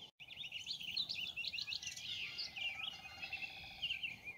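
Wild songbirds singing: a run of quick, high chirping and warbling notes, one after another.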